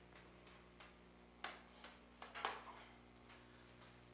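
Juggling balls being caught and thrown by hand: a few faint, irregular slapping taps, the loudest about two and a half seconds in, over a steady low hum.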